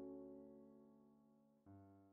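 Quiet background piano music: a held chord slowly fades, and a new chord is struck near the end.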